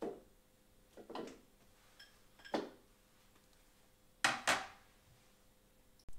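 A few separate clinks and knocks of kitchenware, as a small ceramic bowl of butter is tipped out over a Thermomix's stainless steel bowl. The loudest is a quick double knock about four seconds in.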